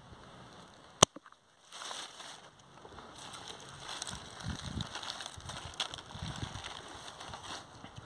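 A single sharp snip of hand pruning shears cutting through a pumpkin's partly dried stem, about a second in. It is followed by rustling of vines and leaves and handling noise as the cut pumpkin is lifted.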